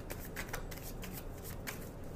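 Tarot cards being shuffled and handled: a run of quick, irregular papery card flicks.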